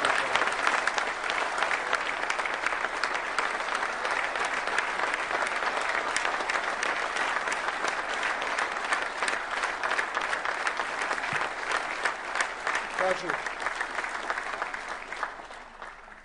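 Seated audience in a large hall applauding, a dense steady clapping that fades out near the end.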